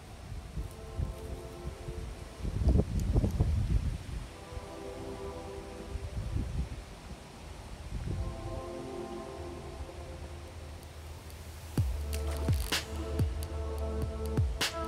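Background music of sustained electronic chords, with a heavy bass beat and sharp percussion coming in near the end. A burst of low rumble about three seconds in.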